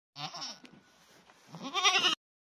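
Goat bleating: a short call just after the start, then a louder, longer one near the end.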